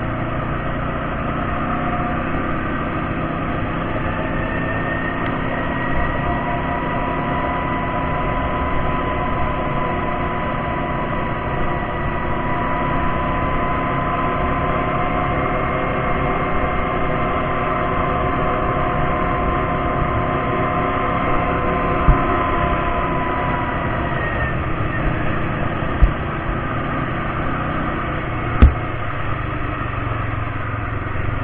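ATV engine running at a steady cruise, with a near-constant whine over a low rumble of wind on the camera microphone. The whine fades a few seconds before the end, and a few sharp knocks come in the last seconds.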